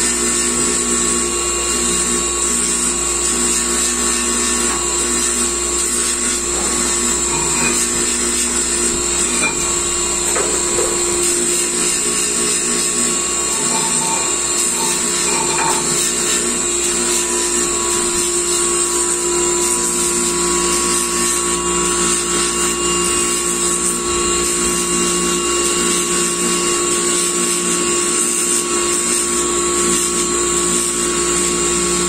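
Electric motor driving an abrasive polishing wheel on a tapered spindle, running with a steady whine while a steel part is held against it and ground, throwing sparks. This is the polishing of the steel before bluing.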